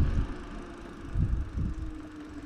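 Wind buffeting the microphone of a camera on a moving bicycle, in uneven low gusts, with a faint steady hum underneath.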